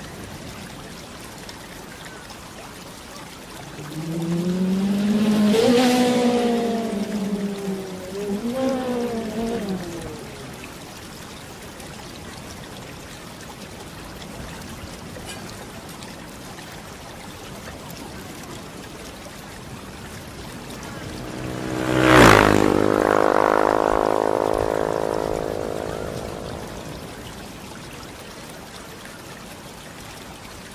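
Steady trickle of running water. Two louder sounds stand out over it: a wavering pitched tone that rises and falls twice between about four and ten seconds in, and a sharp hit about 22 seconds in, followed by a ringing tone that fades away over about five seconds.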